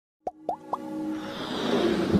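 Three quick pops, each rising in pitch, about a quarter second apart, followed by a swelling rush of sound with sustained tones under it: the sound effects and build-up of an animated logo intro.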